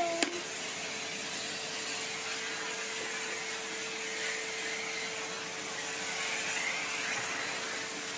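Numatic Henry cylinder vacuum cleaner running steadily: an even rush of suction with a constant hum note.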